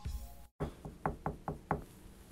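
Knocking on a door: a row of about six quick knocks, beginning about half a second in.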